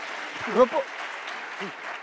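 Theatre audience applauding. A single voice calls out briefly over it about half a second in.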